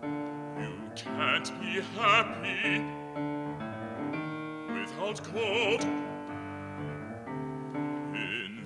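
Live operatic aria for male voice and grand piano. The singer's phrases, with a wide vibrato, come in at about a second and a half and again around five seconds in, over sustained piano chords that fill the gaps between them.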